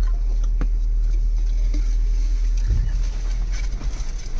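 Cabin noise of a Jeep Wrangler driving down a rough dirt track: a steady low rumble from the engine and tyres, with sharp knocks and rattles as it goes over bumps, a heavier jolt near the end.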